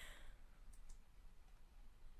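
Near silence after the song ends, with two faint, high clicks just under a second in.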